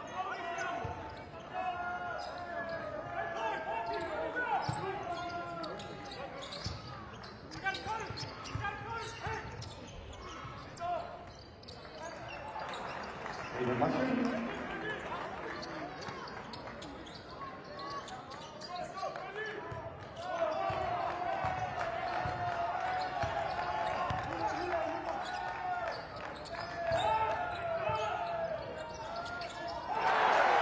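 A basketball being dribbled on a hardwood court, making repeated sharp bounces, under the voices of an arena crowd. From about two-thirds of the way in, the crowd's voices become steadier and sustained, like chanting.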